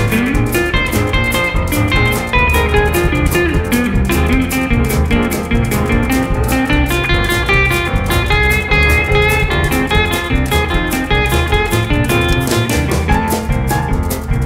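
Instrumental break in a boogie-woogie blues band recording, with no singing: a lead instrument playing over a steady, swung drum beat.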